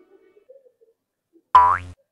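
A cartoon 'boing' sound effect about one and a half seconds in: a short springy tone with a rising sweep, as an animated character pops into view. Before it there is near silence, with only the fading tail of a tone.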